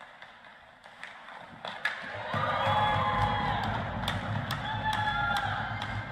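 A single sharp crack of a hockey stick striking the puck on a shootout attempt, followed by loud, high-pitched shouting and cheering from a small group of voices with low thudding underneath.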